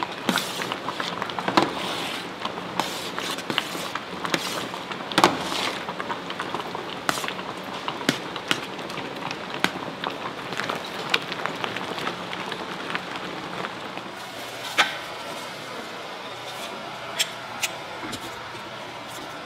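Metal ladle stirring tteokbokki in a large steel pan, scraping and knocking against the metal over the bubbling of the simmering sauce. The knocks come often in the first half and thin out after about fourteen seconds.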